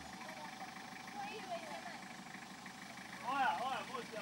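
Faint voices of several people calling out, with a louder shout of a few syllables just past three seconds in, over a low steady background hum.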